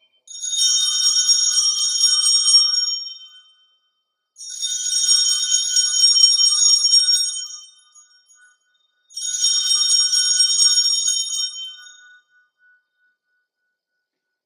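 Altar bells rung three times, each ring lasting about three seconds, marking the elevation of the consecrated host at the Mass.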